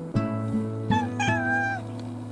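A domestic cat meows twice, a short call then a longer, slightly falling one, over acoustic guitar music.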